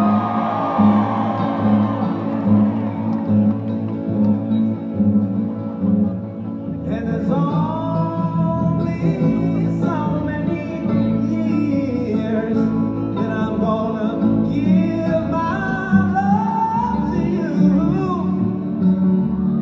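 A live acoustic folk-rock band playing, with upright bass and plucked strings throughout. Singing or a melody line comes in about seven seconds in. It is heard from out in the audience of a large venue.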